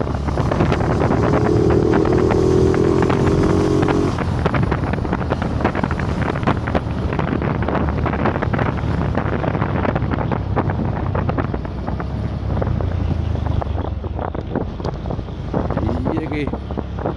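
Motorcycle on the move: its engine running under wind buffeting the microphone, with a held tone lasting about three seconds near the start.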